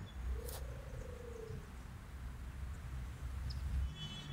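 A faint animal call, one drawn-out note about a second and a half long that rises slightly and then fades, over a low steady rumble, with a single click just before it.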